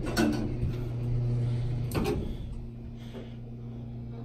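Dover elevator door operator humming as the car door closes, ending in a loud knock about two seconds in as the door slams shut, then a fainter steady hum.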